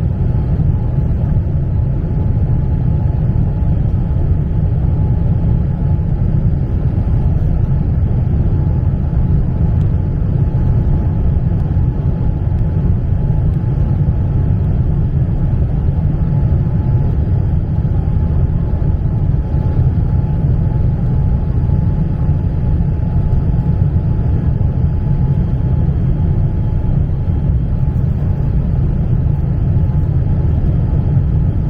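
Steady, low rumble of jet airliner cabin noise, engine and airflow heard from inside the cabin at a window seat, with a faint steady whine above it, as the plane descends to land.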